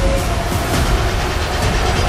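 A film trailer's soundtrack mix: a loud, dense rumble of sound effects and score, with several sharp hits through it.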